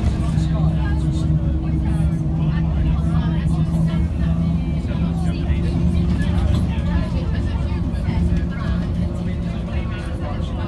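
A bus's diesel engine running steadily under way, heard from inside the passenger cabin as a steady drone over road noise, with passengers' voices chattering in the background.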